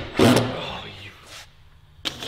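A loud knock against the wooden stair framing as it is knocked out, trailing off, with a lighter knock about a second later.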